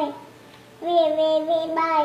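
A toddler's voice chanting a drawn-out "ve" on one steady pitch, starting about a second in.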